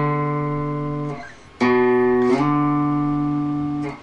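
Clean electric guitar demonstrating a slide on the A string from the second to the fifth fret. A sliding note rings out and fades about a second in. The note is picked again a moment later, slides up in pitch, and rings until near the end.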